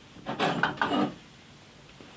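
A miniature wooden cask being shifted on the wooden top of a barrel: a short run of wood scraping and knocking that lasts under a second.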